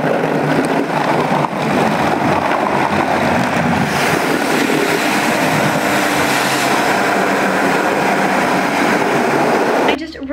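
Automatic tunnel car wash heard from inside the car: cloth brushes and water spray washing over the windshield and body, a loud, steady rush of noise.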